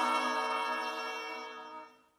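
The last held chord of a 1970s Soviet pop-rock (VIA) song played from a vinyl record, with no bass, fading away and cutting off to silence right at the end.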